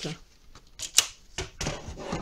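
Cardstock and a plastic paper trimmer being handled: a sharp click about a second in, with rustling and sliding of card around it as the cut card is taken off the trimmer and the trimmer is moved aside.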